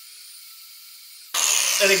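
An angle grinder is switched on about a second and a half in and runs at speed with a high whine. Before that there is only a faint steady hum.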